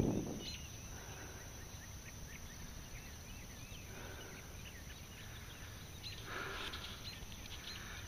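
Faint rural outdoor ambience: scattered short bird chirps throughout over a steady high insect drone and a low background rumble.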